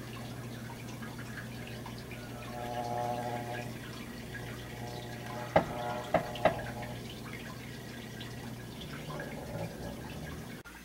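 A steady low hum with three sharp clicks a little past the middle, from a foam drying bar of freshly painted jig heads being handled and shifted.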